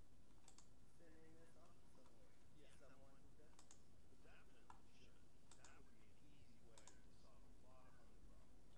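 Very faint, irregular clicks from computer input as a digital painting is worked on, roughly one a second, with faint voices underneath.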